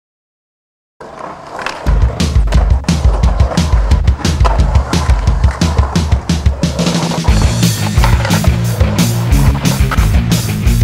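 Music soundtrack with a driving drum beat and a stepping bass line, starting suddenly about a second in after silence.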